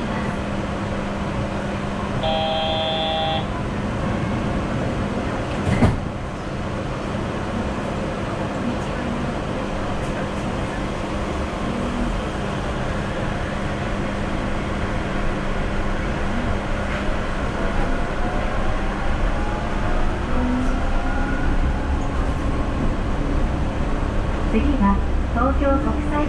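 Inside a Yurikamome rubber-tyred automated guideway train pulling away from a station: a steady electrical hum, a short electronic chime about two seconds in, and a single knock near six seconds. Then the motor whine rises in pitch and grows louder as the train accelerates.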